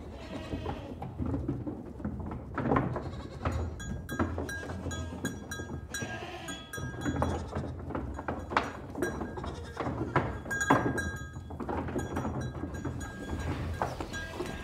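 Farmyard ambience of livestock bleating several times, with scattered sharp knocks and short high-pitched chirps over a low rumble.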